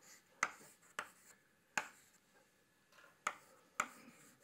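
Chalk writing on a blackboard: about five sharp, irregularly spaced taps of the chalk striking the board, with faint scratching between.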